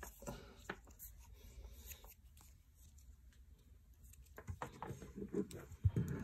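Faint handling noise of a white plastic cable adapter and cable turned over in the hands: light clicks and rubs. The sounds grow busier toward the end, with one sharp click just before the end.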